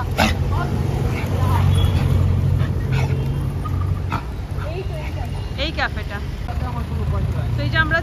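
Street traffic: a vehicle engine running with a steady low hum, with scattered voices talking over it.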